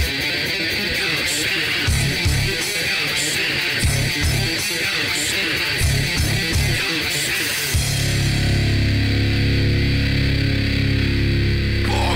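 Hardcore/metal band music: a distorted electric guitar riff with separate hits in the low end. About eight seconds in, the full band comes in with a heavy, sustained bass and drums.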